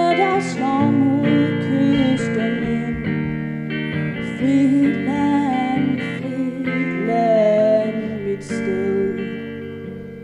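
A song: a woman singing with guitar accompaniment, her held notes wavering, the music getting quieter near the end.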